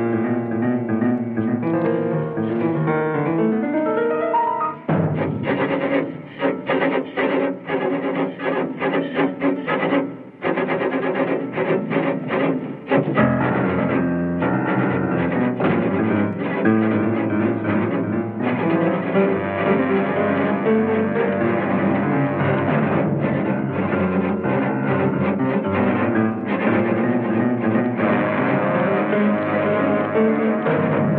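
Orchestral film score music. About five seconds in it turns to quick repeated stabs, and from about thirteen seconds it becomes a fuller, sustained passage.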